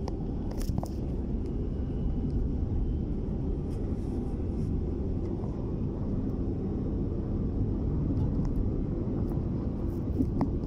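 Outdoor street ambience picked up by a handheld recorder: a steady low rumble with a few faint clicks.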